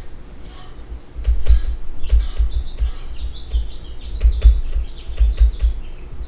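Stylus writing on a tablet, heard as a run of irregular dull knocks and taps with short high scratchy squeaks as the strokes are made.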